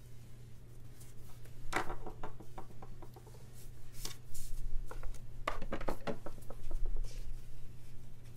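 Hands working paper stickers and a craft knife on a desk: scattered light rustles and small taps, a cluster about two seconds in and a busier stretch from about four to seven seconds, over a steady low electrical hum.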